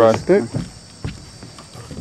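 Insects chirring in a steady high drone, with a man's voice briefly at the start.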